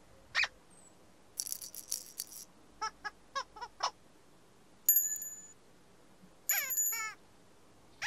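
Whimsical cartoon sound effects: a short squeak, a brief rattling shake, then a quick run of high squeaks. About five seconds in a bell-like chime rings and fades, and near the end another chime sounds with quick squeaky notes that bend up and down.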